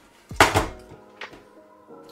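A metal electrical box with a doorbell transformer mounted on it set down on a stone countertop: one loud clunk with a short metallic ring about half a second in, then a faint click.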